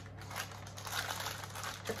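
Baking paper lining a baking tray crinkling and rustling in irregular crackles as hands grip and adjust its edges.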